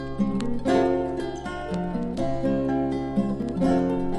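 Acoustic guitar playing a plucked instrumental intro, its melody notes moving over a held low bass note.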